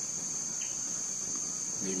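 Steady, high-pitched drone of an insect chorus in tropical forest. A short low call is heard near the end.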